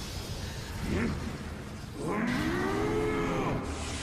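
A long, low vocal cry about two seconds in that rises and then falls in pitch over roughly a second and a half, after a short pitched sound about a second in.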